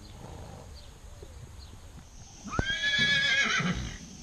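A horse neighing once, about two and a half seconds in: a sudden, loud whinny that jumps up to a high held note for about a second, then breaks into a quavering, fading end.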